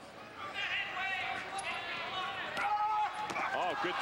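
Voices shouting around a wrestling mat as a heavyweight freestyle wrestler is thrown, with a thud of the body landing on the mat about two and a half seconds in.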